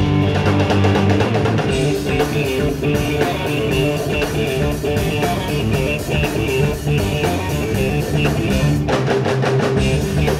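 Live blues-rock trio playing: electric guitar through Marshall amps, electric bass and a drum kit, with steady drum strikes under sustained guitar and bass notes.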